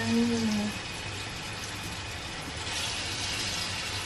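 Banana slices sizzling as they fry in a non-stick pan, a steady hiss that grows a little louder near the end.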